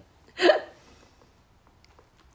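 A single short, sharp vocal sound from a woman, about half a second in, then quiet.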